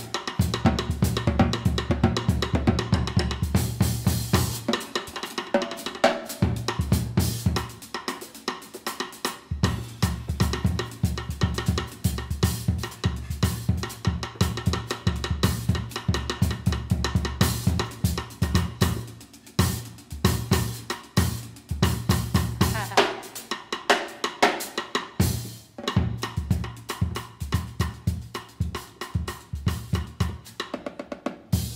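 Live jazz drum kit played busily, with snare, bass drum, cymbals and hi-hat in quick strokes, over upright bass lines that drop in and out in stretches of several seconds. No voice is heard.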